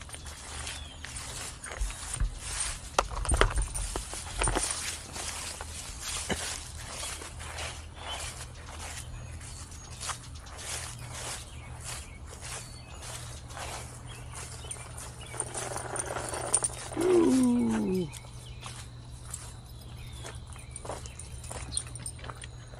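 Footsteps crunching and rustling through dry fallen leaves in a steady walking rhythm. About 17 seconds in, a short louder voice-like call falls in pitch over a second or so.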